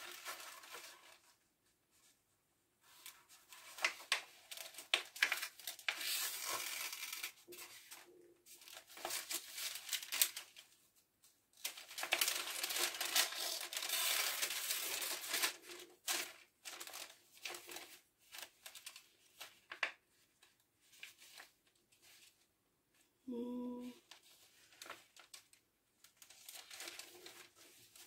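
Paper pages rustling and crinkling in scattered bursts as a journal signature is handled and sewn into its cover with needle and thread.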